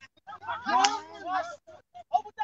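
Several voices shouting over one another, with one loud, drawn-out shout peaking a little under a second in.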